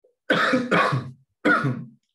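A man coughing to clear his throat: three short coughs, two in quick succession and a third about half a second later.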